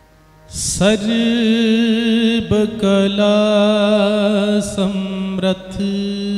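Male voice singing Sikh Gurbani shabad kirtan over a soft, steady harmonium drone. The voice comes in loudly about half a second in and holds long, slightly wavering notes, with a few short breaks between phrases.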